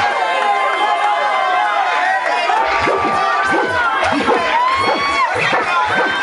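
A crowd of children and adults cheering and shouting in reaction to a battle-rap line, many voices overlapping with high whoops that rise and fall in pitch.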